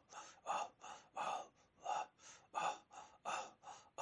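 Rhythmic breath chant: sharp, voiceless breaths taken and pushed out in time, about two and a half a second, as in a Sufi zikr.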